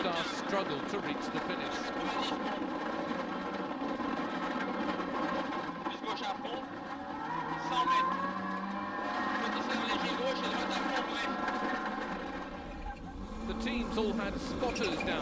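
Cabin sound inside a Ford Focus RS WRC rally car: the engine running, its revs rising and falling, with a clear rise in revs about seven or eight seconds in. Near the end another rally car goes by on gravel.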